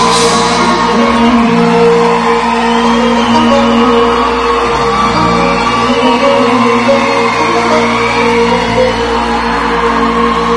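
Live pop band playing an instrumental passage on electric guitar, bass, keyboards and drums, with the audience shouting and whooping over it.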